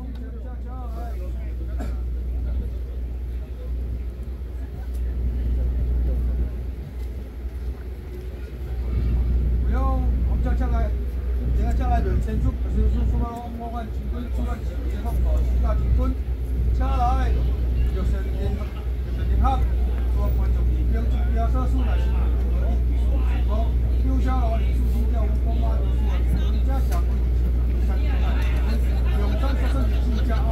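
Several people's voices talking over a steady low rumble, with no drumming.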